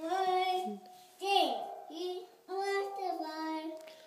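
A toddler singing held notes into a toy microphone in about four short phrases with brief pauses between them; no clear words.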